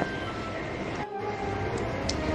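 Background music: sustained held chords, dipping briefly about a second in.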